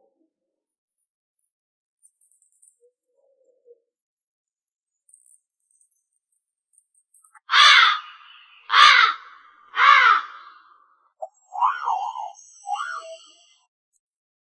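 A crow cawing three times, loud and harsh, about a second apart, starting about halfway through. A few shorter, quieter sounds follow near the end.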